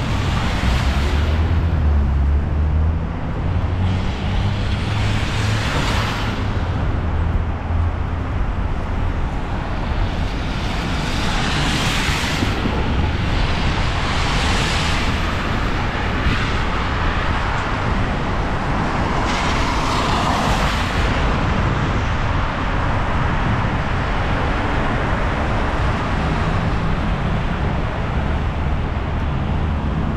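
City traffic on a wet, slushy street: about five cars pass, each a swell of tyre hiss that rises and fades, over a steady low rumble.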